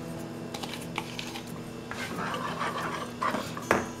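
Plastic kitchen bowls knocking and scraping together as grated carrot is tipped and tapped out of a small bowl into a large mixing bowl of batter: a light clatter with a few short knocks.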